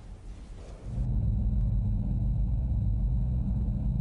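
A steady, deep low rumble sets in about a second in and holds, with a faint thin hum high above it.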